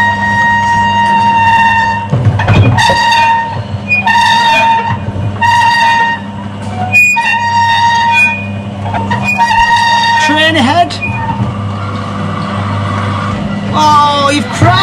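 A train whistle played by a locomotive cab simulator, sounded in short toots about every one and a half to two seconds over a steady low hum of simulated running. A child's voice comes in briefly about ten seconds in.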